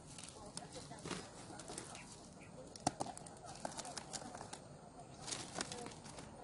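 Footsteps crunching and crackling on dry, cracked field soil and stubble, an uneven run of short clicks about twice a second, with one sharper click about three seconds in.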